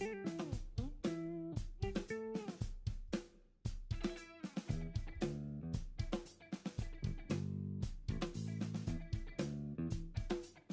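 Background funk-style music with guitar and drums playing a steady beat.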